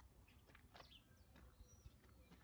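Near silence: faint outdoor background with a few faint bird chirps.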